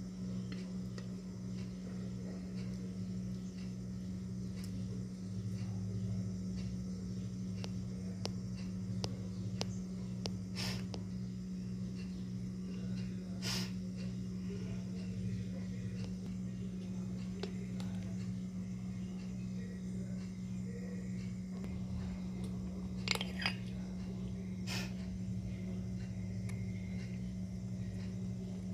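A steady low hum runs throughout, with a few light clicks of a metal spoon against a glass dish as the mousse is scooped out and tasted.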